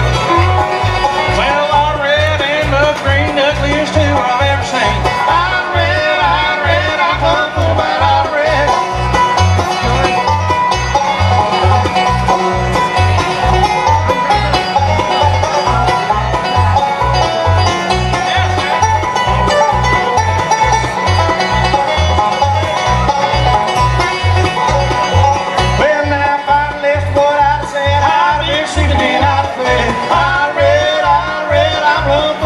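Bluegrass band playing live: banjo and fiddle carry busy melodic lines over acoustic guitar rhythm, with a steady, even low bass pulse underneath.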